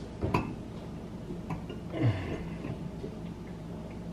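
A few light clicks and knocks, the sharpest about a third of a second in, over a faint steady low hum.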